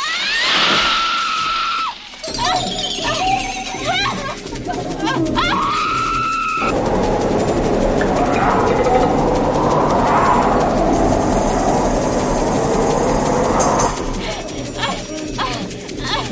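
A woman screaming in terror over a dissonant horror-film score: a long held scream near the start and another about six seconds in, with shorter gliding cries between them, then a loud, dense swell of score for most of the rest.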